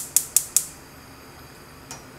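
Gas range burner igniter clicking about five times a second as the burner is lit, stopping about half a second in once the flame catches, then a faint steady hiss of the lit burner.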